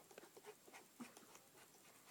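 Near silence, with faint, scattered small ticks and taps of a fine paintbrush and fingers handling a small plastic model aircraft.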